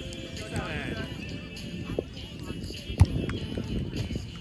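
A volleyball struck hard by a player's hand or forearms, one sharp smack about three seconds in, with a lighter knock a second earlier. Players' voices run underneath.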